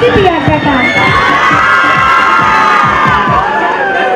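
A crowd of children cheering and shouting, many high voices rising together about a second in and held in one long shout.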